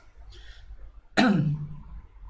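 A man's short breath, then about a second in a single brief non-speech sound from his voice that starts sharply and drops in pitch.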